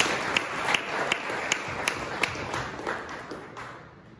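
Audience applauding, with one nearby clapper's claps standing out at about three a second; the applause dies away near the end.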